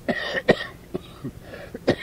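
A man coughing several times in a row, recorded on a home audio cassette. He calls it a bad cough, and not a cigarette cough.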